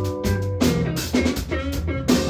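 A band jamming: a drum kit keeps a steady beat of about two strikes a second, under held bass and guitar notes.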